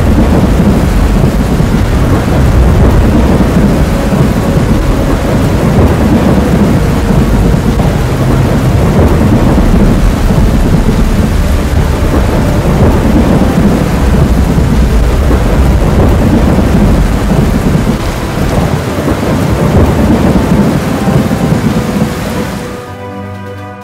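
Loud, continuous low rumble with a hiss over it, steady throughout and dipping slightly near the end.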